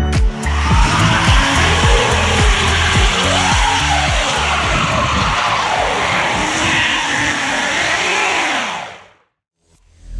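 Tyres of a Kia EV6 sliding on an icy road, a loud scrabbling hiss with squeals that rise and fall, over background music with a steady beat. Everything fades out about nine seconds in.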